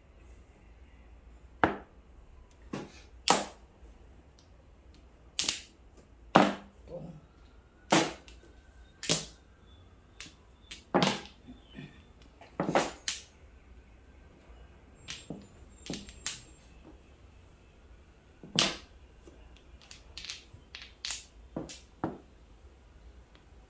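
Mahjong tiles clacking as players draw, rack and discard them: sharp, irregular clicks about a second apart, some in quick pairs.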